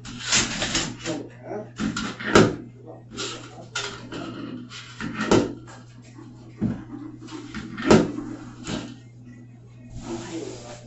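A cloth wiping and rubbing a painted wall, with about nine sharp knocks and bumps against the wall and wall decor, over a steady low hum.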